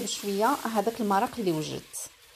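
Mostly a woman speaking, over a faint sizzle of rice cooking in freshly added broth as it is stirred in the pot.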